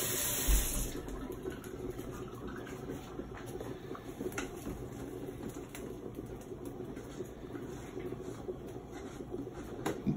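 Kitchen sink tap running as a spoon is rinsed under it, shut off about a second in. After that, only faint clicks and knocks of things being handled at the counter.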